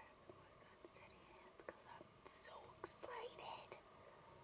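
Faint whispering by a woman in short breathy phrases, with a few soft clicks scattered through.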